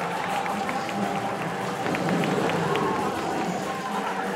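Stage music with long held tones, under the voices of an audience, with scattered light clicks.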